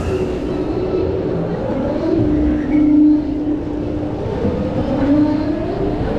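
Bobsled roller coaster car rolling slowly along its trough track into the station at the end of the ride, with a steady rumble and a low whine from the wheels that rises and falls in pitch.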